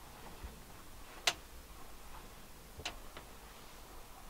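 A few sharp clicks over a faint low hum: one loud click about a second in, then two softer ones close together near the three-second mark.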